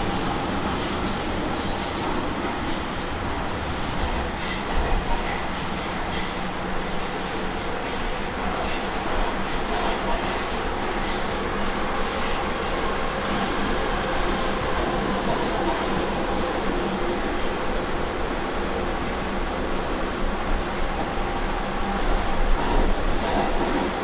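Metro train running at speed through a tunnel, heard from inside the passenger car: a steady rumble of wheels on rail and running gear, swelling briefly louder a few times.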